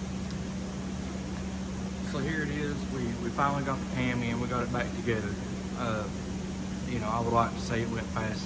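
A man talking over a steady low hum; he starts speaking about two seconds in.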